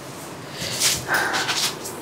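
Silk saree fabric rustling as it is handled and smoothed flat on a table, in short bursts, with a brief faint steady tone a little past the middle.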